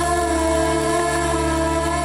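Dramatic background score: one steady held chord over a low drone, with no melody and no change in pitch.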